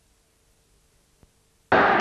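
Near silence from blank videotape playback: a faint steady hum with a single click about a second in. Sound then cuts in abruptly and loudly near the end as the recorded audio resumes.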